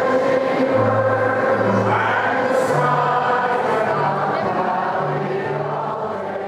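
A large group of people singing a song together, many voices at once, with held low notes that shift every half second or so.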